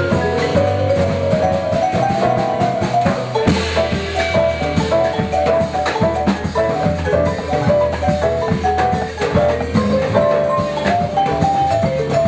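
Live small-group jazz: quick runs of notes on a mallet keyboard over a drum kit and a steady low bass line.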